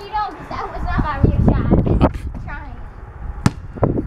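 A basketball thudding on a concrete driveway, two sharp bounces about two and three and a half seconds in, with a low rumble and brief murmured voices around them.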